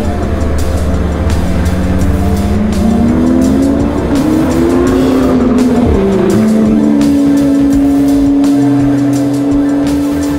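Background music over a sports car engine on track, revving up through the revs and then dropping sharply in pitch about six seconds in as the car passes by.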